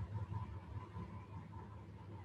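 Quiet room tone with a steady low hum and faint hiss from the recording setup; no speech.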